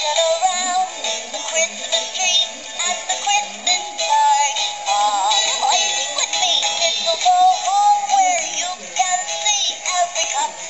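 Animated singing Christmas ball ornament playing a song through its small built-in speaker: a thin, electronic-sounding singing voice over a backing tune.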